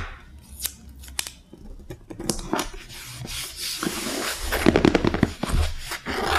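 Fingers pressing and rubbing stickers onto a kraft paper mailer: a few crisp paper clicks at first, then rustling and crackling of the paper that grows louder in the second half.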